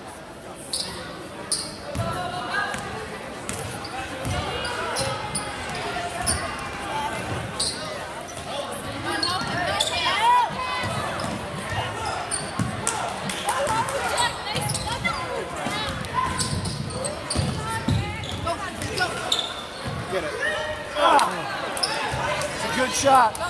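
Basketball bouncing on a hardwood gym floor as players dribble up the court, a string of short thuds, with indistinct shouts from players and spectators in the echoing gym.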